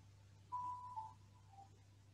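A few faint, pure whistle-like notes stepping down in pitch, the first held about half a second, over a steady low hum.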